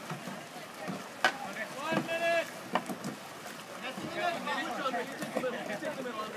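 Voices of players and onlookers calling out across open water, with one clear shout about two seconds in. Two sharp knocks sound about a second and a half apart among the voices.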